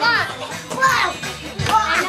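Music playing while young children's voices call out over it in high, gliding tones, three times.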